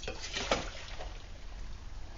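A few light knocks and handling noises as a metal cook pot of hot water is moved, followed by quiet, steady background hum.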